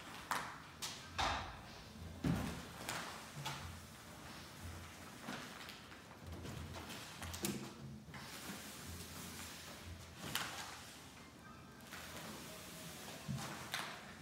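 Glass panels of a NanaWall folding door being folded open by hand: a scattering of clicks and knocks from the hinged panels and their hardware, with an intermittent low rumble as the panels move.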